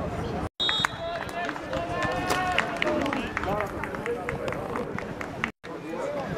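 Scattered men's voices calling across an open football pitch during play, with small knocks. The sound cuts out completely twice, briefly, at edits: about half a second in and near the end.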